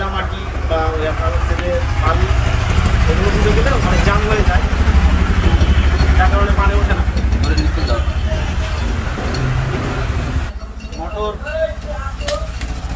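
Men talking over a loud low rumble that cuts off abruptly about ten seconds in.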